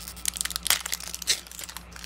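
Plastic-foil trading-card booster pack wrapper crinkling in irregular crackles as it is torn open by hand.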